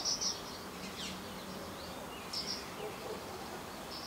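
Small birds chirping: a few short, high chirps at the start and again a little past halfway, over faint steady outdoor background noise.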